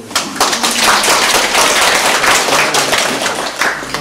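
Audience applauding. The clapping breaks out right at the start, stays strong throughout and begins to thin at the very end.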